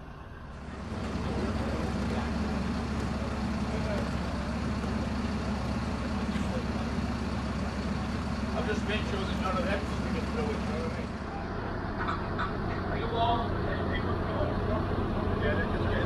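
Mobile crane's diesel engine running steadily under load as it lifts a boat on slings, starting about a second in, with faint voices in the background.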